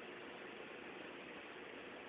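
Faint, steady outdoor background noise with no distinct event: low room-tone-like hiss.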